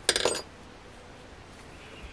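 A metal crochet hook set down with a clatter on the work surface: a brief run of metallic clinks, over in under half a second, near the start.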